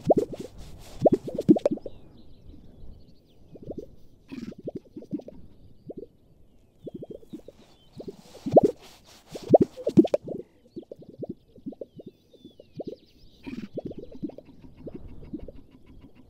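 Male Gunnison sage-grouse displaying on a lek: clusters of low, hollow pops from their inflated throat air sacs, repeated every few seconds, with a few brief swishing sounds among them.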